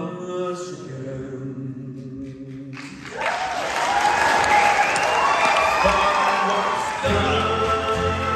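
A male lead voice holds a long note with no accompaniment. About three seconds in, the audience breaks into loud cheering and applause. Near the end, acoustic guitars come back in.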